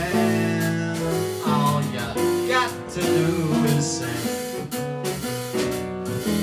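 Live jazz quartet playing: walking upright bass, piano chords and drums, with a male voice singing over the band at times.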